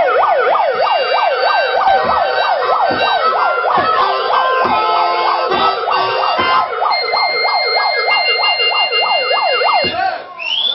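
Handheld megaphone's built-in electronic siren sounding a fast yelp that rises and falls about four times a second, played loud into the microphone, with a few low thumps under it. It stops suddenly at the very end.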